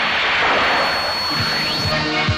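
A loud rushing whoosh from a film sound effect for the superhero's flight, with a thin high whistle held over its second half. Near the end, music with a thumping beat comes in under it.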